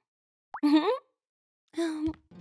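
Short wordless voice sounds from an animated character, the first sliding upward in pitch. A quick rising blip comes just before it, about half a second in.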